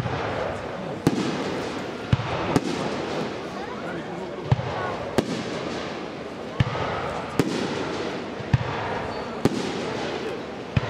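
Fireworks display: aerial shells bursting in sharp bangs, about ten in ten seconds at uneven intervals, over a steady murmur of crowd voices.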